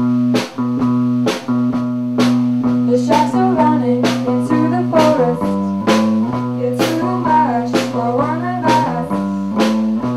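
A small live rock band: an electric guitar holds low, sustained notes over a steady drum beat with cymbal hits, and a woman sings from about three seconds in.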